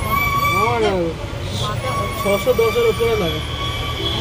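Steady street-traffic rumble with a held vehicle horn, which sounds for about a second at the start and again from about halfway, under people talking.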